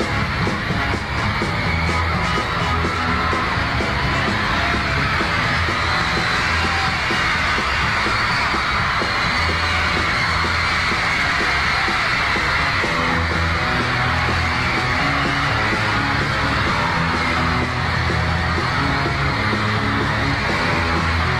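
Live rock band playing a driving beat with a repeating bass line, almost buried under constant high-pitched screaming from a large crowd of teenage fans.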